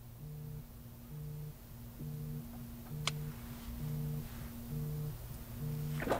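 A low hum pulsing on and off about once a second over a steady faint tone, with a single sharp click about three seconds in.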